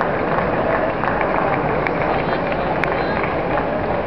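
Steady hubbub of a tournament hall: many overlapping distant voices of spectators and coaches, with a few sharp clicks scattered through it.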